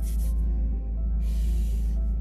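Background music over the steady low hum of an idling car with its heater running. In the second half comes a soft rubbing hiss of hands rubbed together for warmth.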